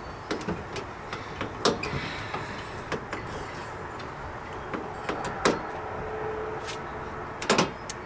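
Scattered clicks and light knocks of a hand tool against the screws and metal of a circuit-breaker panel, over steady background noise.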